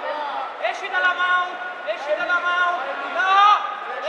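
Men's voices shouting in short, high-pitched calls, one after another.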